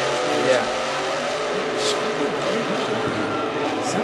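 Monster truck engines running and revving at a rally, heard from a television broadcast.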